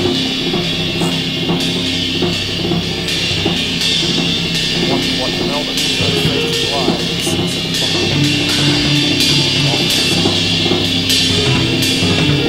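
Acoustic drum kit played in a continuous run of strokes on drums and cymbals, over backing music with held chords that change about eight seconds in.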